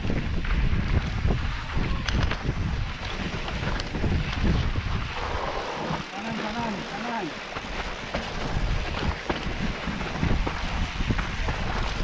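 Wind buffeting the microphone over the rumble and clatter of a mountain bike rolling down a rough dirt trail, with frequent small knocks from the bike over the ground. A voice is briefly heard about six seconds in.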